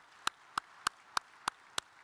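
One pair of hands clapping steadily close to the microphone, about three claps a second, over faint applause from a seated audience.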